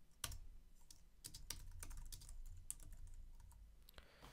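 Typing on a computer keyboard: faint, irregular keystroke clicks.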